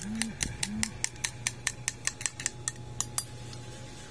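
A metal teaspoon stirring coffee in a ceramic mug, clinking against the sides about five times a second, until the stirring stops a little after three seconds.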